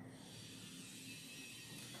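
Faint steady hiss of room tone and recording noise, with no distinct event.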